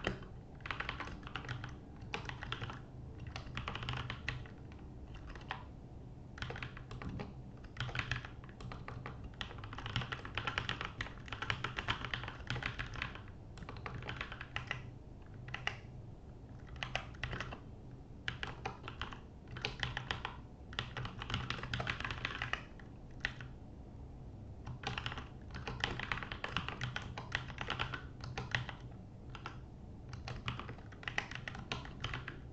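Typing on a computer keyboard: runs of quick keystrokes broken by short pauses, over a low steady hum.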